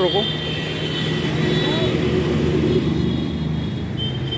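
Steady hum of a running engine or machine, with a faint high whine above it.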